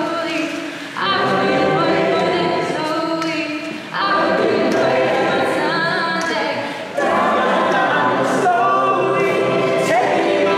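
A mixed-voice a cappella choir singing in close harmony, with no instruments. Each phrase comes in strongly about every three seconds.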